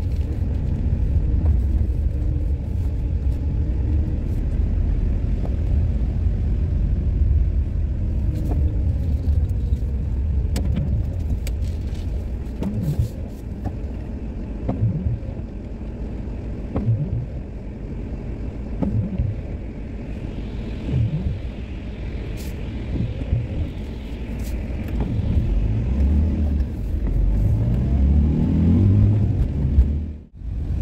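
Camper van driving on a wet road, heard from inside the cab: a steady low engine and road rumble, with the engine note rising several times as it pulls away and accelerates, most strongly near the end.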